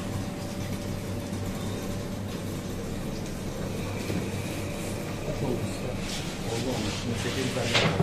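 A steady low machine hum fills the room, with faint voices in the background and a brief rustling swish near the end.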